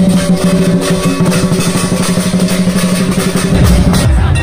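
Vietnamese festival drum-and-gong percussion: fast, continuous drumming over a steady ringing tone.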